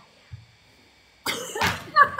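Quiet for about a second, then a woman's sudden, short, breathy vocal outburst.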